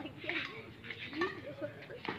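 Faint, indistinct background chatter of voices.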